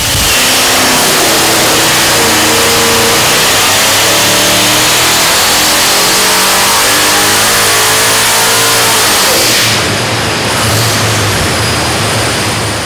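Twin centrifugal-supercharged 427 LS V8 making a wide-open-throttle dyno pull: a loud, steady engine note with a high supercharger whine rising in pitch as revs climb. About ten seconds in, the throttle closes and the engine drops back.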